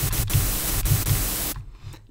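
Serum synthesizer's noise oscillator playing its default "AC Hum 1" sample on its own: a steady hiss over a low hum, which stops about one and a half seconds in.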